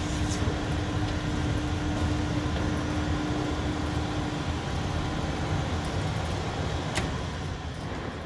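Steady rumble of the drying oven's geared electric motor and gearbox turning the automatic stirrer shaft and its arms, with a steady hum that fades about halfway through and a single sharp click near the end.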